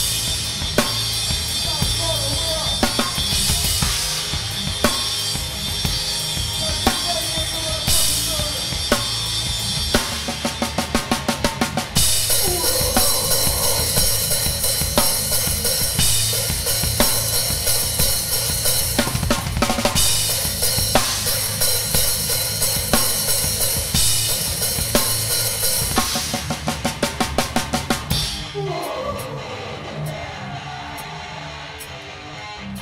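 Live hardcore band music heard from a close-miked drum kit: kick, snare and Zildjian cymbals driving the beat, with guitar and bass under it. Twice the drums break into fast runs of even strokes, about eight a second, and just before the end the drums stop, leaving the guitar ringing.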